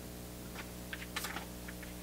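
A quick run of soft clicks and rustles as a person shifts and gets up in front of the microphone, over a steady low electrical hum.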